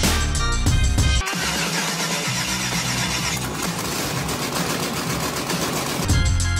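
Background music for about the first second, then it cuts off and a 5.3-litre LS V8 engine is heard starting up and running, a dense steady sound that grows an even, rapid pulse in the later part.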